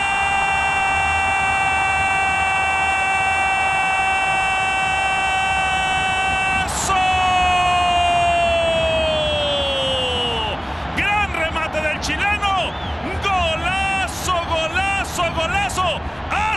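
A TV football commentator's drawn-out goal cry: one long high note held for about ten seconds, sinking in pitch near its end as his breath runs out. Fast excited commentary follows.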